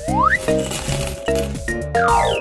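Cartoon sound effect of a gumball machine dispensing a stream of small candies that rattle and clink into a paper bag, opened by a quick rising whistle.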